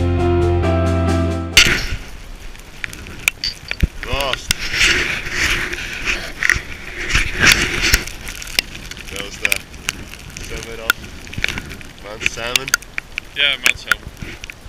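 Background music that cuts off suddenly about a second and a half in, giving way to gusty wind buffeting the camera microphone, with scattered clicks and short snatches of voice.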